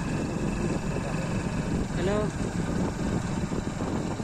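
Motorcycle engine running steadily while riding along a road, with road and wind noise. A voice calls "hello" once about two seconds in.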